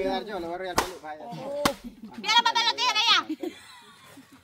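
Two sharp slaps of a rubber sandal, about a second apart, among excited voices, with a high-pitched shriek or laugh about two seconds in.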